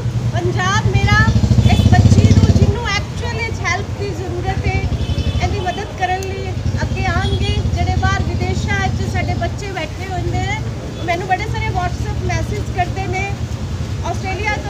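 A woman talking over a low vehicle engine running nearby; the engine is loudest in the first three seconds, drops off sharply, then carries on more quietly under the voice.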